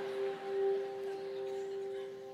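Background music: one steady, sustained note held without change, like a keyboard pad.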